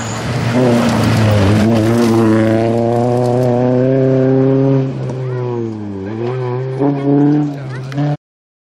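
Renault Clio rally car's four-cylinder engine revving hard as the car accelerates past and away on a gravel stage. The engine note climbs over the first couple of seconds and is held high, then dips and recovers at gear changes about five and six seconds in.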